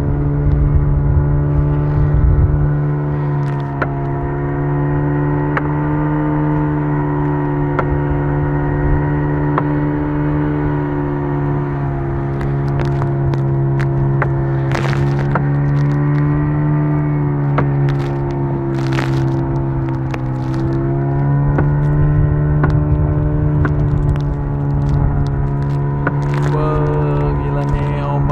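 Motor of a small wooden boat running steadily under way: one continuous low drone whose pitch wavers slightly, dipping and recovering near the three-quarter mark. Brief sharp knocks and cracks come and go over it.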